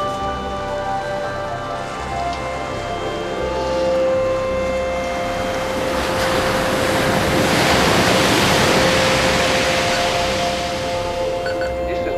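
Soundtrack music of long held tones, joined about six seconds in by the rush of surf breaking on a shore, which swells, peaks and fades away near the end.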